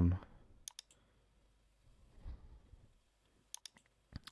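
Computer mouse button clicks: a pair of quick clicks just under a second in and a rapid run of three clicks near the end, with a faint low murmur between them.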